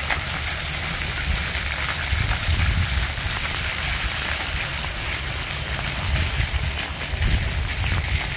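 Steady hiss of rain falling on an umbrella and on wet pavement, mixed with the spray of splash-pad fountain jets, with an uneven low rumble underneath.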